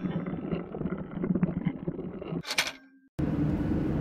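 Logo-intro sound effect of turning machinery, an irregular mechanical clatter that ends in a short whoosh about two and a half seconds in. After a brief silence, a steady low jet-engine rumble begins near the end.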